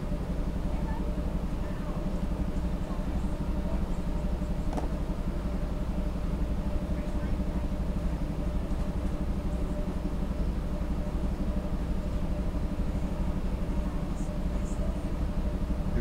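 A steady low mechanical hum runs throughout, with a few faint light clicks.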